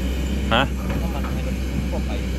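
Kobelco hydraulic excavator's diesel engine running steadily, a constant low drone.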